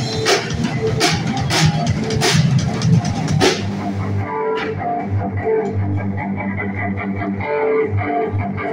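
Live rock band playing: drum kit with cymbal crashes, electric guitar and bass guitar. About halfway through the drums drop out, leaving guitar and bass ringing on.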